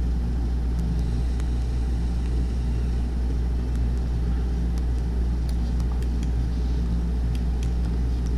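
A steady low hum and rumble of background noise, with a few faint clicks scattered through it.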